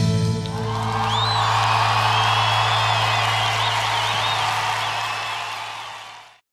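The song's last held note rings on while, from about a second in, an audience applauds and cheers with whistles. It all fades away near the end.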